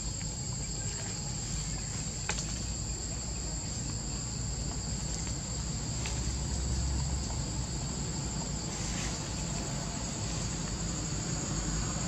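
Steady high-pitched drone of an insect chorus, two unbroken high tones holding level throughout, over a low background rumble.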